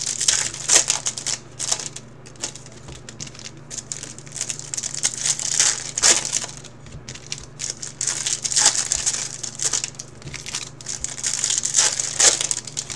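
Foil wrappers of Bowman's Best trading-card packs crinkling and tearing as packs are opened by hand, in irregular bursts of crackle. A steady low hum runs underneath.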